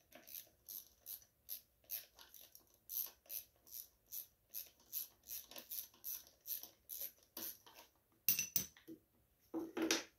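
Light, even plastic clicks at about three a second as the air filter cover is unfastened on a Briggs & Stratton mower engine, with a louder cluster of clacks near the end as the cover and filter come out.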